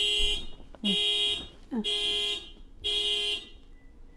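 Electronic beeper sounding a repeated alarm-like beep, about one beep a second, each about half a second long. It gives four beeps and stops about three and a half seconds in.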